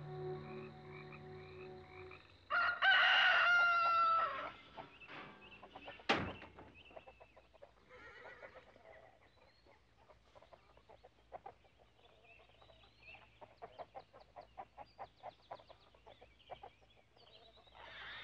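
Frogs trilling steadily, then a rooster crowing once, loud and about two seconds long. A single sharp knock follows, and then faint scattered clicking and hen clucks.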